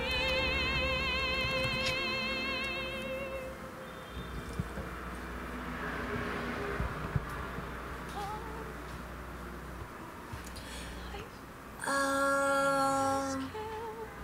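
A sung note with wide vibrato held for about three and a half seconds, then a stretch of faint sound, then a steady held note with no vibrato for about a second and a half near the end.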